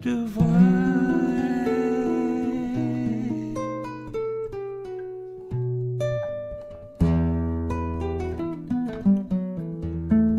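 Classical guitar being fingerpicked: single plucked notes and chords ring on, with a firm chord struck just after the start and a deep bass chord about seven seconds in.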